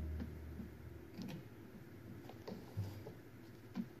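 The last of the digital organ's low sound fading away in the first second, then a few faint scattered clicks and rustles from hands moving about the console and the music rack.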